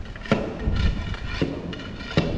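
A stick prodding a blocked floor drain through standing water and wet muck: a few short knocks and splashes as it jabs at the clog.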